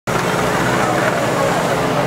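A steady engine hum with a crowd's voices chattering over it.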